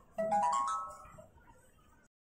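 Body-worn camera's built-in electronic start-up chime: a quick run of about five beeps, each higher than the last, as the camera powers on and shows its welcome screen.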